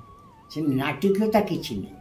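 An elderly man speaking a short phrase after a brief pause, over a faint wavering high tone in the background.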